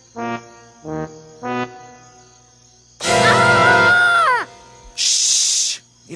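Cartoon suspense music: three short staccato notes, then a loud held blast, brass-like, that slides down in pitch as it ends, followed by a brief hiss like a cymbal.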